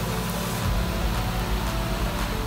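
Steady hiss of chicken pieces sizzling on the grates of a barbecue grill, over a low steady rumble.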